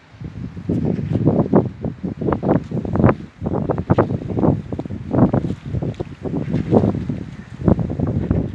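Wind buffeting the microphone in irregular, closely spaced gusts of low noise.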